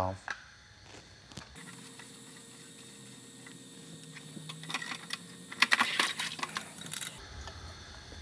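Plastic clicking and rattling as a water softener's brine-tank foot valve assembly is pulled up out of its PVC brine well tube, with a few single clicks early on and a dense burst of rattling in the second half, over a faint steady hum.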